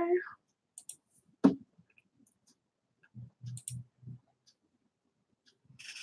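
A few scattered clicks, one sharp and loud about a second and a half in, then four soft low knocks a little past the middle.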